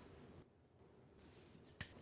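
Near silence: faint room tone, with one short soft click near the end.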